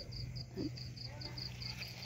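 A cricket chirping in an even rhythm, about four to five high chirps a second, over a steady low hum.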